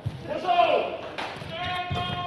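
Badminton rally ending in an indoor hall. Footfalls and shoe squeaks sound on the court mat, with a sharp racket or shuttlecock strike about a second in. Near the end comes a long, steady, high pitched cry as the point is won.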